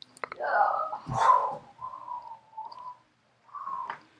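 Indistinct human voice sounds without clear words: a breathy, whispery stretch in the first second and a half, then several short held vocal tones.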